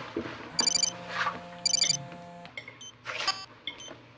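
Mobile phone ringtone sounding in short repeated trills about a second apart, stopping about two and a half seconds in as the call is answered, with rustling as the phone is handled.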